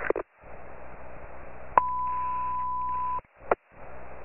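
Fire-department two-way radio: a moment of static hiss, then a click and a steady single-pitch alert tone held for about a second and a half, ending in a short squelch click.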